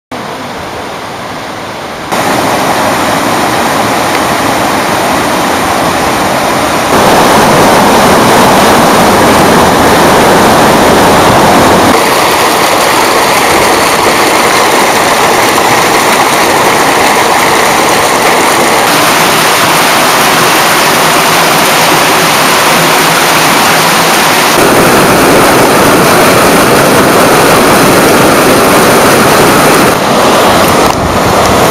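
Water rushing and splashing into concrete trout-farm raceways: a loud, steady rush of noise that shifts abruptly in loudness and tone every few seconds.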